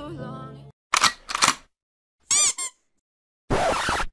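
A sung pop song ends within the first second. It is followed by short sound effects separated by silence: two brief bursts, then a short squeaky chirp of wavering pitch, and a hiss near the end.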